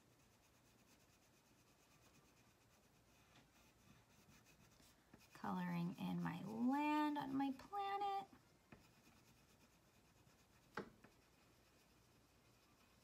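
Faint scratching of a wax crayon colouring on paper. A woman's voice sounds for about three seconds in the middle, louder than the crayon, and there is a single sharp click near the end.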